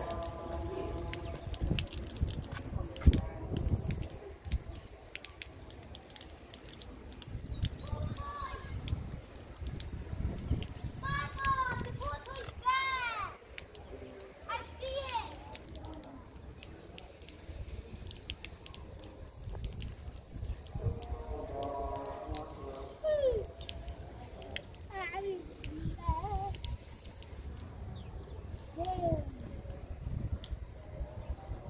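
Rainwater dripping off the edge of a metal roof sheet, a scatter of small ticks and drips. Voices call out in the distance now and then.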